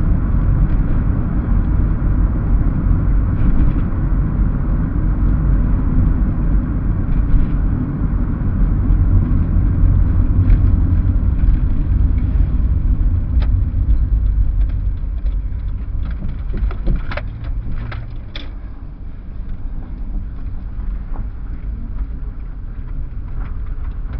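Car cabin road noise while driving: a steady low rumble of engine and tyres that eases off about two-thirds of the way through as the car slows, with a few sharp clicks near the end.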